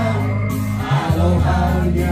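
A man singing through a handheld microphone over backing music, with a bass line that steps between held notes.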